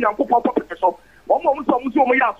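Speech only: a man talking, with a brief pause about a second in.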